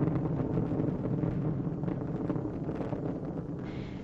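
Space shuttle launch roar from the solid rocket boosters and main engines: a steady low rumble with some crackle, slowly fading.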